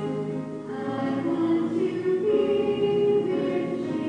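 Voices singing a hymn in slow, held notes.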